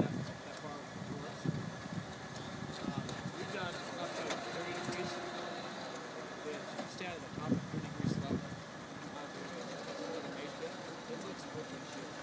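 Indistinct voices of several people talking, with no clear words, over a faint steady hum.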